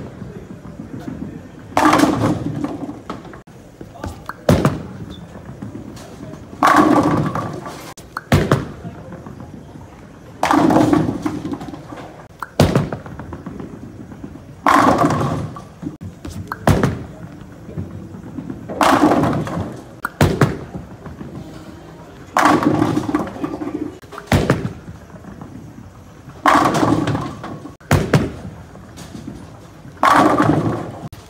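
Bowling shots in quick succession: a Storm Code X bowling ball rolling down the lane and crashing into the tenpins about every four seconds, seven pin crashes in all, each dying away over about a second. A short sharp click comes about two seconds before each crash.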